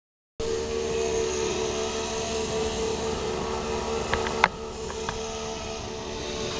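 Chainsaw engine running steadily. A few sharp clicks and a louder knock come about four seconds in, after which it runs a little quieter.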